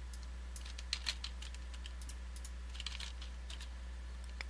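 Computer keyboard keystrokes: a few scattered key presses in small clusters, over a low steady hum.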